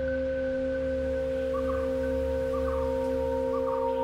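Ambient sleep music made of a binaural-beat drone: several steady, pure held tones over a low hum. Soft short pulsing notes come in about a second and a half in and repeat about once a second.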